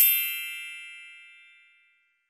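A single bright chime that rings out and fades away over about two seconds, a sound effect marking a step of the task being ticked off.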